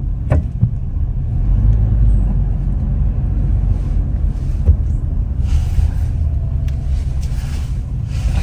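Low, steady rumble of a car heard from inside the cabin as it moves slowly in traffic, with a soft hiss rising briefly a little past halfway.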